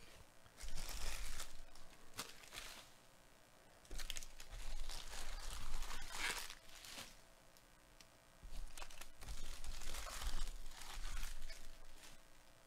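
Crinkly plastic shrink wrap being torn and crumpled off a sealed trading-card hobby box, in three spells of a few seconds each.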